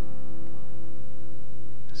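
Guitar C major chord left ringing after a strum, its notes slowly fading: the closing chord of the refrain's C–A minor–F–G progression.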